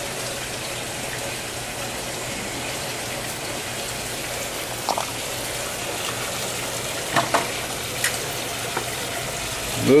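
Steady, even rushing noise, with a few faint clicks about five, seven and eight seconds in.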